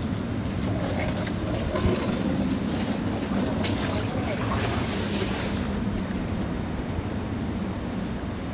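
Steady low rumble of a small boat travelling along a narrow mangrove channel.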